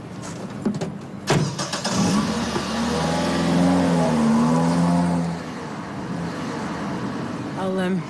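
A car door shutting about a second in, then a minicab's engine pulling away, loud for about three seconds before it drops off.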